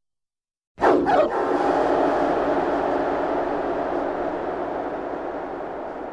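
After a short silence, recorded dogs barking burst in suddenly about a second in as a dense, loud sound effect that slowly fades: the opening of a dance track.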